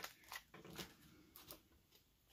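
Faint handling noise: soft plastic rustles and a few light clicks from a clear stamp sheet being handled.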